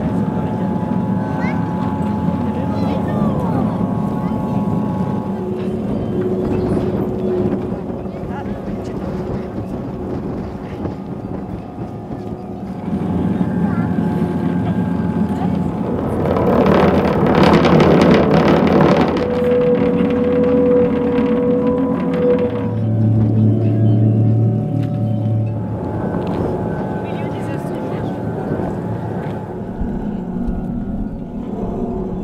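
Wind-played aeolian sound sculptures, strings stretched on tall poles over cello bodies and drum-skin resonators, humming several long steady tones that shift in pitch as the wind changes. About halfway through, a loud gust of wind sweeps over them and across the microphone, and a deep low tone sounds for a couple of seconds after it.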